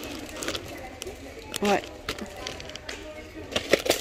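Clear plastic snack tub, its lid wrapped in film, being handled and set back on a shop shelf: light plastic clicks and rustles, a few close together near the end.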